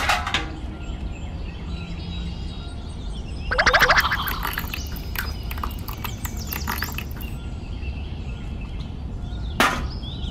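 Birds chirping in the background over a steady low outdoor noise, with a louder burst of rapid chattering calls about three and a half seconds in. A sharp click comes at the start and another near the end.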